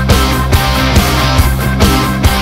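Rock song playing, an instrumental stretch without singing: electric guitar, bass and a steady drum beat.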